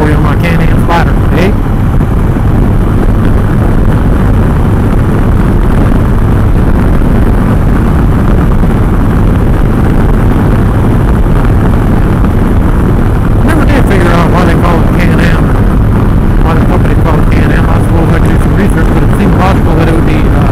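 Steady, loud wind rush on the microphone and road noise from a Can-Am Spyder F3 three-wheeled motorcycle cruising at highway speed, with its engine running steadily underneath. A few brief scratchy bursts break through about 14 to 16 seconds in.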